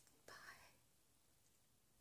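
Near silence: room tone, with one brief, faint sound about half a second in.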